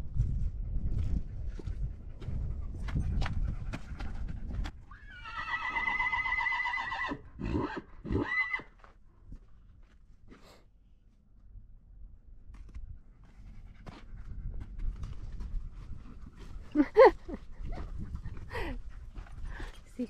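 Stallion whinnying once: a long, wavering call of about four seconds that starts about five seconds in. A short, loud noise follows a few seconds before the end.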